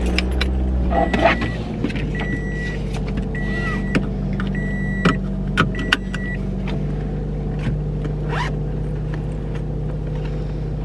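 A car engine starts and settles into a steady idle. Over it come five short high beeps of a car's warning chime between about one and six seconds in, with a few sharp clicks near the last beeps. The chime stops once the driver's seat belt is fastened.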